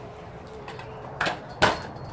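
Three-wheeled wiggle scooter rolling on concrete, a faint low rumble, with a sharp knock about one and a half seconds in.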